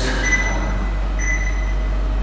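A steady low hum with two brief, faint high-pitched whines about a second apart.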